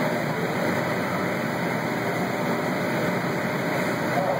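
Steady machine noise: a constant rushing drone that holds at one level, without any break or change.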